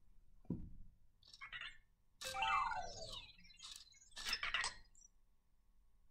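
Anki Vector robot's electronic chirps and blips, faint: a few short sounds with a longer run of sweeping tones about two seconds in. It is the robot answering a voice command to turn its volume up.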